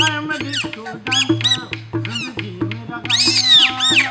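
Rajasthani kathputli puppeteer's squeaky puppet voice, made with a reed whistle (boli) held in the mouth: rapid, chattering runs of high gliding squeaks voicing a string puppet, loudest near the end. It sounds over the show's musical accompaniment, which has a low steady beat.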